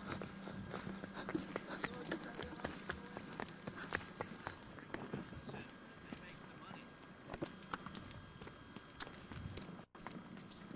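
Irregular footfalls and hoof clacks on a stony trail, with faint voices in the background.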